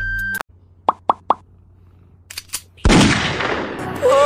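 Three quick plops in a row about a second in, followed near the end by a sudden loud rush of noise that fades away.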